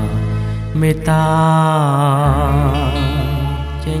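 Cambodian pop duet: a singer holds long, wavering vibrato notes over a backing band with a steady bass line.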